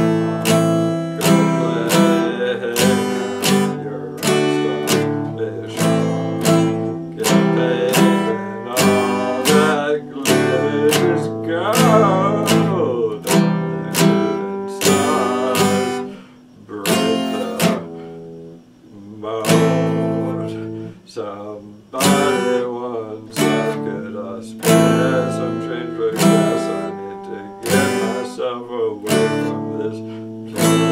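Acoustic guitar strummed chords in a steady rhythm, about two strokes a second. Around the middle the playing thins out to a few quieter notes before the strumming picks up again.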